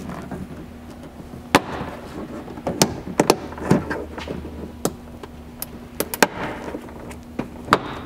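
Plastic retaining clips of a rear-hatch trim panel popping free under a plastic pry tool: about ten sharp snaps and clicks at irregular intervals.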